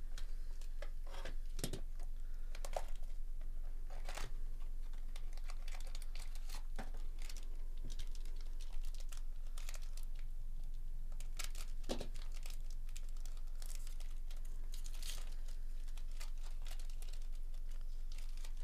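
Trading cards handled and flicked through by hand, then a foil card pack torn open and crinkled as the cards are slid out, making scattered sharp clicks and rustles over a steady low hum.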